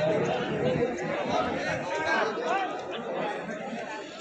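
Several men's voices talking at once in the background, indistinct chatter with no clear words.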